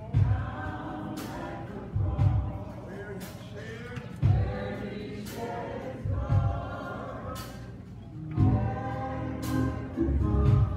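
Church choir and band performing a slow gospel song: voices hold sustained chords over organ or keyboard, with drum and cymbal hits about every two seconds.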